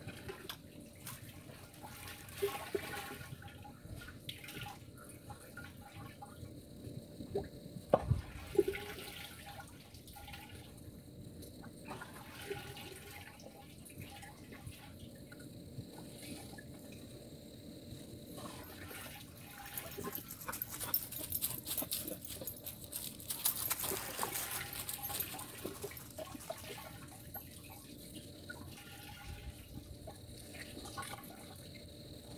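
Dyed wool trousers being dipped and sloshed in a rain barrel of water, with irregular splashing and dripping. A thump comes about eight seconds in, and about two-thirds of the way through there is a louder stretch of splashing, running water.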